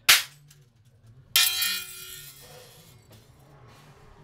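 A cymbal stack, several hand-made cymbals stacked on one stand, struck twice with a stick. The first hit is a short, dry crack. About a second later comes a second hit, which rings brightly for about a second before dying away.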